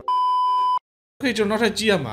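A single high, steady electronic beep lasting just under a second, starting and stopping sharply, followed by a short silence before speech resumes.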